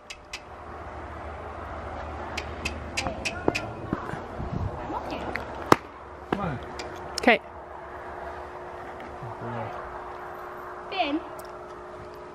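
Quiet barn sounds: scattered light clicks and taps and a few brief murmured voice sounds, over a low rumble in the first half and a steady hum in the second half.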